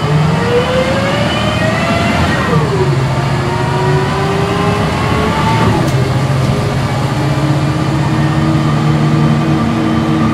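Volvo B10M Mk3 bus's diesel engine and ZF gearbox, heard from inside the cabin while accelerating. A rising whine drops at an upshift about two and a half seconds in, climbs again, drops at a second upshift near six seconds, then the bus runs on at a steady pitch.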